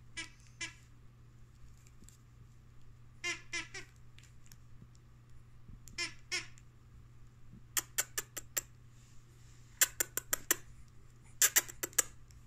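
A squeaker in a plush baby toy, squeezed in quick pairs of short squeaks three times. This is followed by three quick runs of sharp clicks in the second half.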